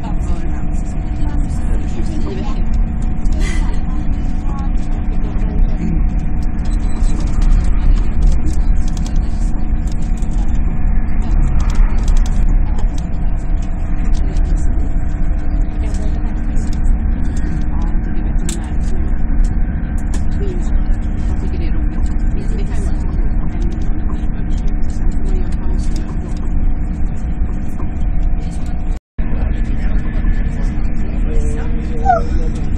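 Cabin noise of an SJ X2000 high-speed train at speed, heard from inside the passenger car: a steady low rumble of wheels on track with a constant hum over it. The sound cuts out for an instant near the end.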